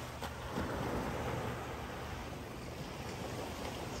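Surf washing on a sandy beach: a steady rushing noise.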